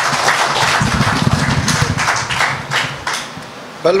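Audience applauding at the end of a speech, with a low rumble about a second in; the clapping dies away near the end as a man's voice starts.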